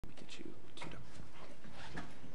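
Close rustling and light knocks of a microphone being handled, with clothing brushing against it, in short irregular bursts.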